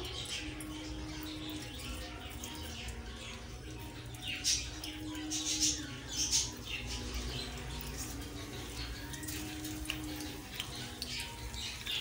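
Cumin seeds sizzling faintly in hot oil in a frying pan, the start of a tempering (tarka). A few sharper crackles come about halfway through.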